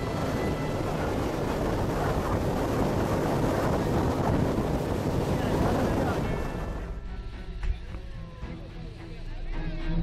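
Steady rush of water and wind heard from an open speedboat on the river near the waterfalls. The loud rush cuts off suddenly about seven seconds in, leaving a quieter background.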